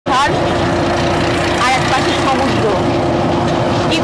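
A road vehicle running along a road: a steady low rumble with a constant hum, with people's voices in snatches over it.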